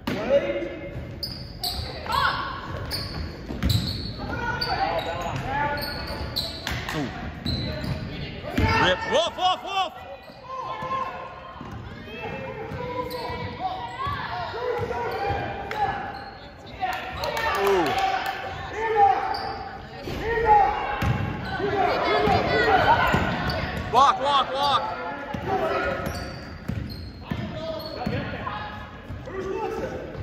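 A basketball bouncing on a hardwood gym floor during game play, with voices calling out on and around the court.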